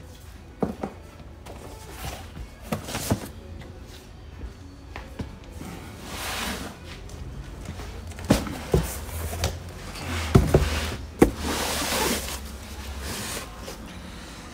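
Cardboard comic book storage boxes being handled and set down: scattered thumps and knocks with the scraping and rustling of cardboard sliding against cardboard, strongest in the second half.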